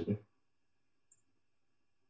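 A man's voice trails off in the first moment, then near silence with one faint tiny click about a second in.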